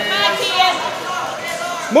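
Spectators' voices in a gym hall: shouting and talk in the first half second, quieter voices through the middle, and a loud shout of encouragement ("Move") right at the end.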